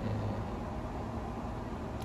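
Steady outdoor background noise: a low, even rumble with a faint hiss and no distinct events.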